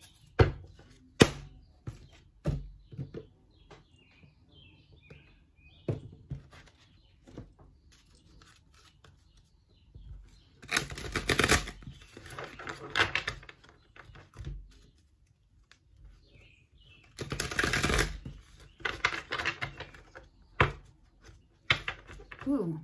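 Tarot cards being handled and shuffled: scattered taps and clicks, then two dense riffling bursts of two to three seconds each, about ten seconds in and again about seven seconds later.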